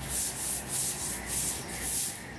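Long-bristled broom sweeping a stone-tiled floor: quick, repeated brushing scrapes of the bristles across the tiles, about three strokes a second.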